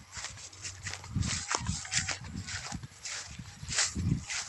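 Footsteps through tall grass: irregular swishing and rustling strokes, with a few dull low thuds from about a second in.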